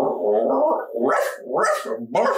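A man doing a vocal impression of a tired dog, making dog-like noises with his voice, with a breathy huff about the middle and another near the end.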